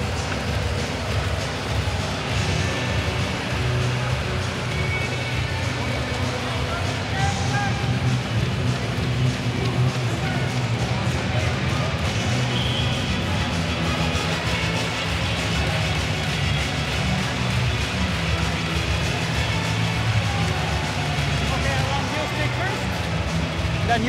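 Music playing over an ice hockey arena's public-address system, with the crowd's noise underneath.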